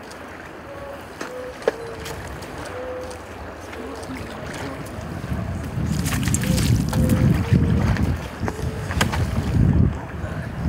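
Water sloshing around rescuers in drysuits wading chest-deep through an icy river, with wind rumbling on the microphone that grows louder from about halfway through.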